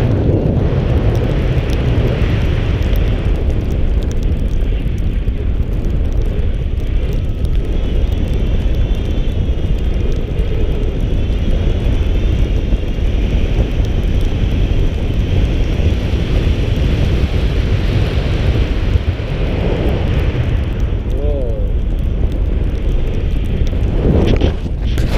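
Wind buffeting and rushing over an action camera's microphone in flight on a tandem paraglider: loud, steady, deep rumbling noise.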